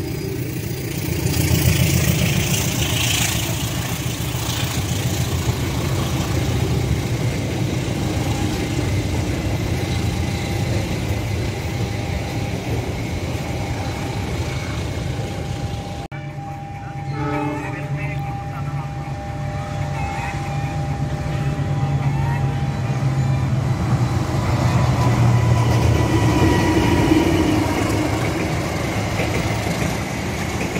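Passenger train coaches rolling past close by, a steady rumble of steel wheels on rail. After a sudden cut about halfway through, the rumble of another train builds again as it approaches and passes.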